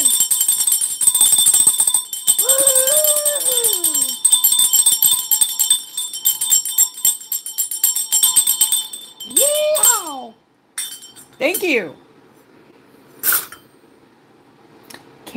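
Shaken jingle bells, a fast rattling shimmer that stops about nine seconds in, with a woman's whooping voice over it.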